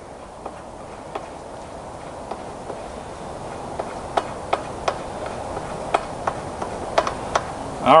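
Small irregular clicks and ticks as the azimuth adjustment bolts of a Sky-Watcher EQ6-R Pro equatorial mount head are hand-tightened, sparse at first and coming more often after about four seconds, over a steady background hiss.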